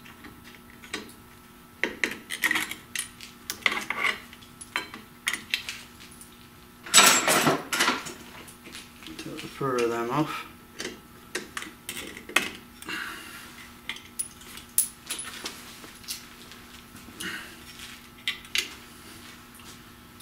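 Pliers and steel brake shoe retainer clips clicking and clinking against a drum brake's shoes and backing plate as the retainers are undone, in irregular light metallic taps, with a louder clatter lasting about a second some seven seconds in.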